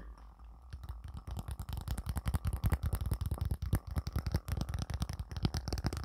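Fingernails tapping and scratching on a cardboard tarot deck box (the Cosmic Tarot), held close to the microphone: a fast, irregular run of small clicks that starts about a second in.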